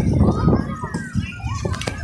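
Children's voices calling out and chattering as they play, over a steady low rumble.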